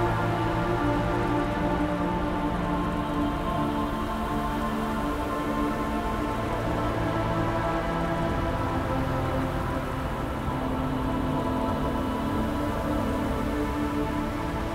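Dark ambient music: slow, held low synth drones that shift pitch now and then, over a steady rain-like hiss of industrial ambience.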